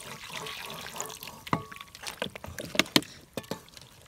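Tap water running onto raw chicken pieces in a metal bowl while a hand rubs and turns the meat to wash it. About halfway through, the steady stream fades and a series of sharp, wet splashes and slaps from the handled pieces takes over.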